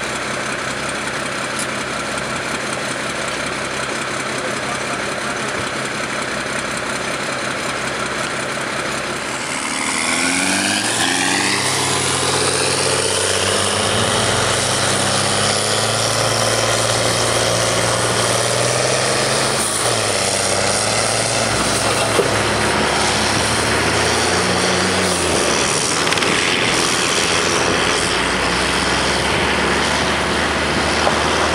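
Tracked CVR(T) Spartan armoured vehicle's engine idling steadily. About ten seconds in, the engine note rises in a rev as the vehicles pull away, then settles into loud, steady running.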